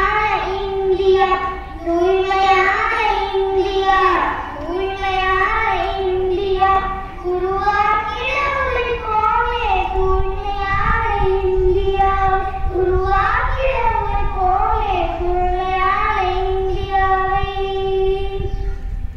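A boy singing a song solo into a microphone, with long held notes.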